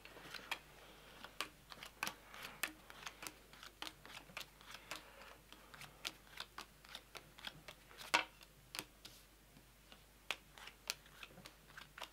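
Playing cards dealt one at a time onto a tabletop into three piles: a run of light, irregular card snaps and taps, with one louder about eight seconds in.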